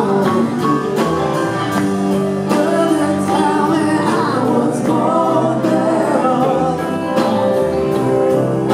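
A live rock band playing: electric guitars, keyboards and a steady drumbeat, with a voice singing over them.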